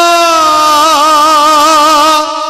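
A man's voice holding one long sung note of a naat through a microphone and PA. The note dips slightly in pitch about half a second in, then wavers.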